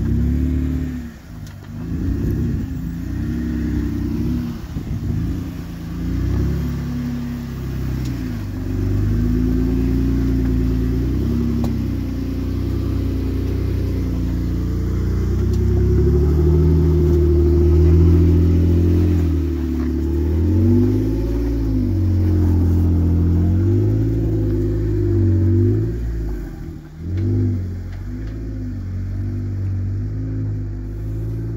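Off-road Jeep engine at crawling revs while the Jeep manoeuvres, rising and falling again and again in short throttle blips. It is loudest around the middle and drops away briefly twice, near the start and near the end.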